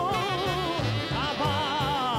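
A man singing held notes with wide vibrato over a pop band, with a steady bass line underneath: a long held note, then a second one that scoops up into its pitch about a second in.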